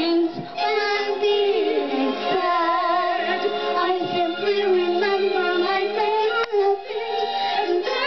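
A young girl singing through a handheld microphone, holding long, wavering notes.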